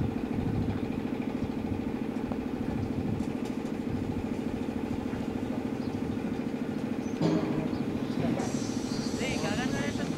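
A steady engine drone, holding one pitch throughout, with voices calling out about seven seconds in and again near the end.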